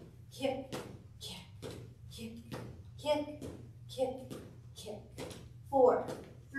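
A woman's voice in short, evenly spaced syllables about once a second, with light taps of footsteps on a wooden floor between them.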